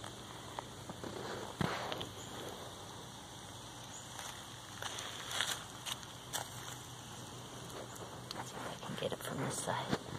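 Quiet outdoor background with a few faint, scattered clicks and rustles from a handheld phone being moved about.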